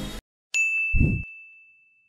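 Logo sting sound effect: a single bright ding that rings out and fades over about a second, with a short low thump just after it strikes.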